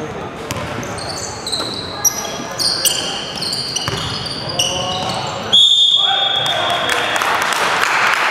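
Basketball game on a hardwood court: sneakers squeaking in short, high chirps and the ball bouncing, in a large echoing hall. About five and a half seconds in, a loud, sharp referee's whistle blast cuts in and fades away.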